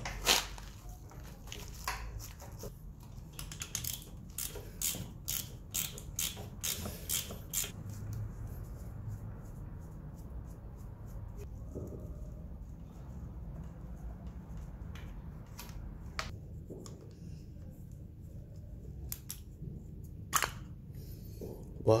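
Ratchet wrench with an 8 mm socket clicking in quick runs while undoing the carburetor's mounting nuts on a small motorcycle engine. This is followed by a quieter stretch, then a few more light metal clicks near the end as the carburetor is worked free.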